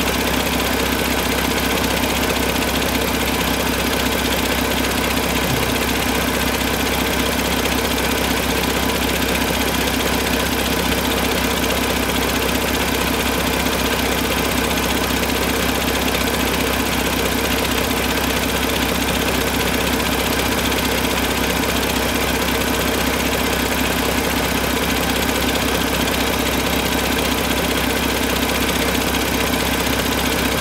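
A 2019 Paccar MX-13 inline-six diesel engine idling steadily, running bare on an engine stand out of the truck.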